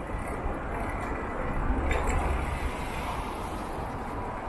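City street traffic noise: a steady hum of road traffic with a low rumble that swells about halfway through, plus a few faint clicks.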